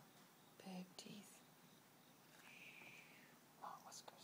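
Faint whispering close to the microphone, a few short soft bursts in otherwise near silence.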